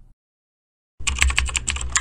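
Rapid computer keyboard typing, a quick run of many keystrokes starting about a second in and lasting about a second.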